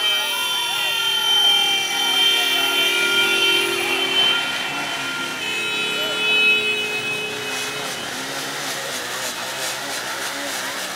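Several vehicle horns held in long steady blasts, layered over a crowd's shouting voices. One horn stops about four seconds in and another starts soon after.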